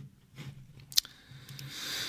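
A short gap between voices filled with faint mouth and microphone noises: small ticks, a sharp click about a second in, and a breath-like hiss building near the end.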